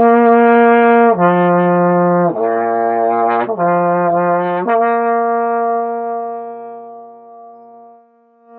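Trombone playing a five-note lip slur in first position, starting at the top: upper B flat, down to F and low B flat, then back up through F to upper B flat. The notes are joined without tonguing and last about a second each. The final upper B flat is held for about three seconds and fades away.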